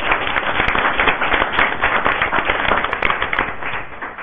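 Audience applauding: dense hand-clapping that thins out near the end.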